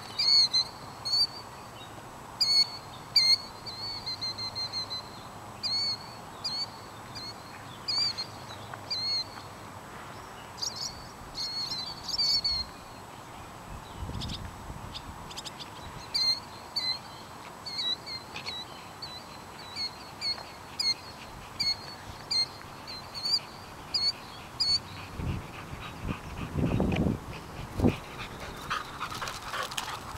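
Birds giving short, sharp, high calls over and over, dozens of them in quick series, with a lull in the middle. Near the end the calls stop and a few low thumps come in.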